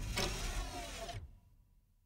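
The tail of a TV title sequence's theme music and its mechanical sound effects, dying away a little over a second in.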